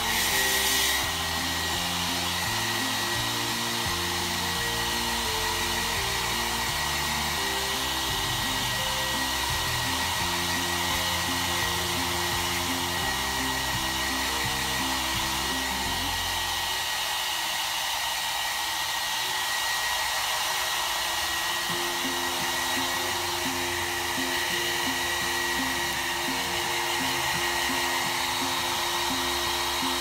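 Handheld hair dryer blowing steadily, an even hiss with a thin steady whine running through it, briefly louder in the first second.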